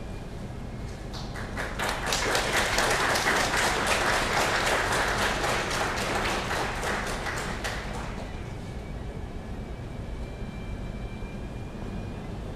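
Audience applauding, starting about a second in and dying away after about seven seconds.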